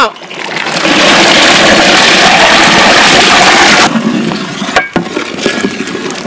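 A loud, steady sizzling hiss from a large cooking pot, cutting off suddenly a little before four seconds in. It is followed by quieter bubbling and a ladle scraping and knocking as it stirs a steaming pot of curry.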